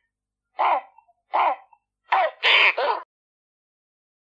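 Pelican calls: five short calls, the first two spaced apart and the last three in quick succession about two seconds in.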